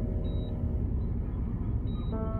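Low, steady rumble of a stationary truck's engine idling.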